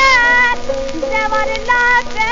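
Hindustani song playing from an HMV 78 rpm shellac record: a high held note wavering in pitch, then steadier melody notes, over the record's surface noise.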